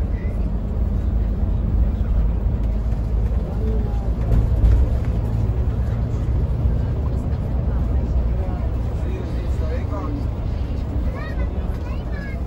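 Steady low rumble of a Yutong coach bus's engine and road noise heard inside the moving bus, swelling slightly a few seconds in. Faint voices in the cabin, mostly near the end.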